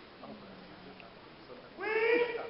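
Low murmur of a hall, then near the end a loud, high-pitched human call starts: it swoops up at its onset and is held.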